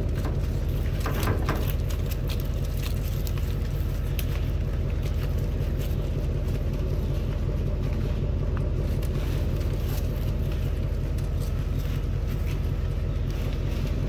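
Steady low rumble of an idling vehicle engine, unchanging throughout, with faint scattered clicks over it.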